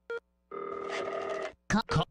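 A telephone ringing: one ring of about a second, with a short beep just before it. A voice begins near the end.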